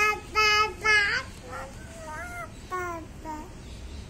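A baby of about five months babbling: three loud, high-pitched vocal sounds close together in the first second, then several softer ones, mostly falling in pitch.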